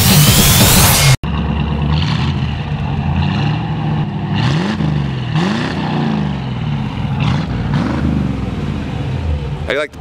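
Heavy rock music cuts off about a second in, followed by the 1957 Chevrolet Bel Air's 283 cubic-inch V8 running through its dual exhaust, with a few short revs near the middle.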